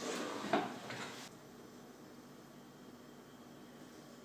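Metal clatter of a baking tray going into an oven and the oven door being shut, with the loudest knock about half a second in. After about a second and a half only faint room tone remains.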